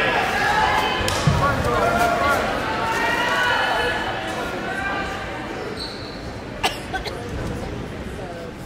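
Basketball bouncing on a hardwood gym floor amid the chatter of players and spectators, with a few sharp knocks, two of them close together near the end.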